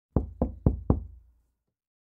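Four quick, evenly spaced knocks on a door, about four a second, each with a short dull ring-off, then stopping after about a second.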